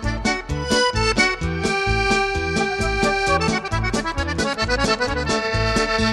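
Instrumental break in an Italian song: an accordion plays the melody in long held notes over a steady, rhythmic bass-and-chord accompaniment.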